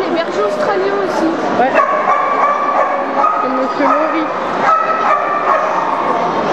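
Dogs barking, yipping and whining over the steady chatter of a crowd, with one long, high whine about two seconds in.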